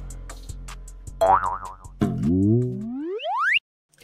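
Logo sting sound effect over a fading music bed: a wobbling cartoon boing, then a long rising glide that cuts off suddenly.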